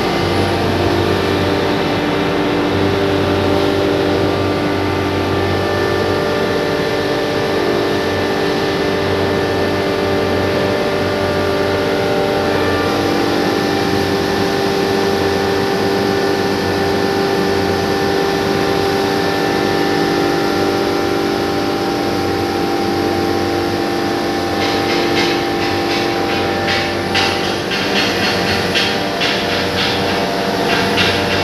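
Hammer-mill pulverizer running steadily, a loud hum with several steady tones, while whole coriander seeds are hand-fed into its hopper. Near the end a rapid, irregular crackle joins in: seeds being struck and ground in the mill.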